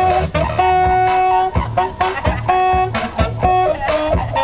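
A saxophone playing a melody of held notes over recorded backing music with bass and a steady beat from a loudspeaker.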